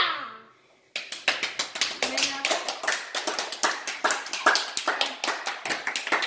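Hands clapping: a quick, uneven run of claps that starts about a second in and keeps going.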